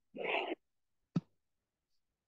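A man's audible breath, a short breathy puff, between spoken phrases, followed about a second in by a single short mouth click.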